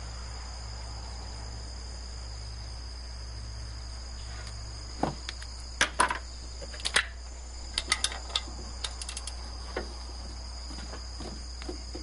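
A steady high-pitched, cricket-like tone runs throughout. About four seconds in, irregular sharp clicks and knocks start, a dozen or so over the next five seconds, from handling around the car's underside.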